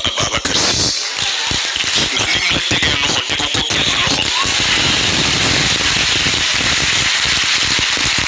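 Crowd applauding in a hall, many hands clapping densely, with a man's voice over a microphone through the hall's sound system.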